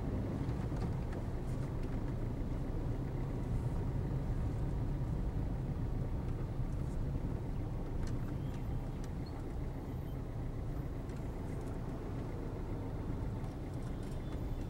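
Steady low rumble of a car driving slowly in traffic, heard from inside the car: engine and tyre noise.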